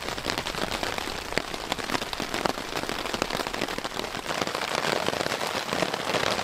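Rain pattering on a 20-denier silpoly tarp overhead: a dense, steady patter of many small drop hits.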